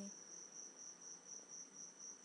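Faint cricket trill: one continuous high-pitched tone that pulses slightly in level, over low room hiss.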